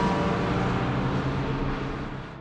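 A bus driving past on a highway, its engine and tyre noise fading away near the end.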